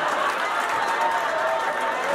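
Audience applauding and laughing: a steady, dense crowd noise in reaction to a punchline.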